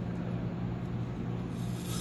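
A .38 calibre nylon brush rubbing inside the front end of a rifle's piston gas system, scrubbing out carbon, over a steady low hum. The scrubbing gets louder near the end.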